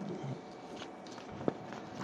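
Faint handling noises at a desk while the statute text is looked up, with one sharp click about one and a half seconds in.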